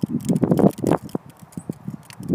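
Irregular flapping and rustling close to the microphone, a quick uneven run of crackly slaps that is loudest in the first second: a loose little flap on a tea container flapping around.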